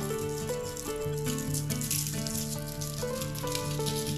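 Background music with a melody of held notes, over the light rattle of seasoning being shaken from a plastic spice jar onto fish fillets.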